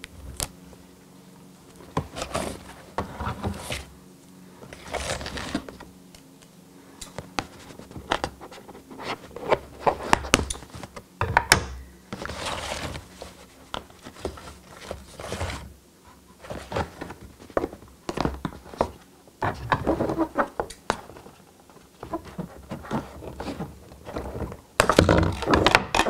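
Hands handling a plush teddy bear and its plastic miniature replica camera on a paper backdrop and wooden tabletop: irregular soft knocks, scrapes and rustles, busiest near the end, over a faint steady hum.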